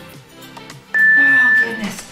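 A workout interval timer gives one loud, steady electronic beep about a second in, lasting under a second, over background music. It marks the end of a 30-second work interval.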